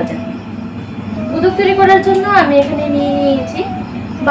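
Only speech: a woman talking, with some long drawn-out vowels.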